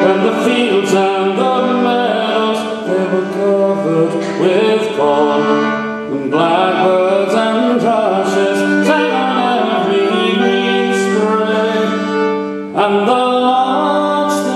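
A traditional English folk song performed live: voices singing over a bowed fiddle, with a short break in the phrase near the end.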